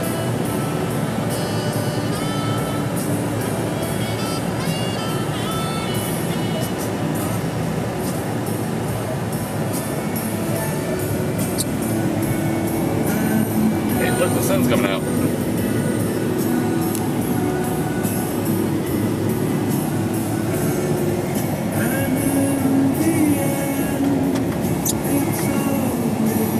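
Music from the car radio playing inside the cabin, over the steady running noise of the car.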